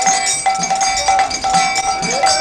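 Devotional bhajan music: a sung melody carried over a regular beat of ringing metal hand cymbals (kartals), about two to three strokes a second.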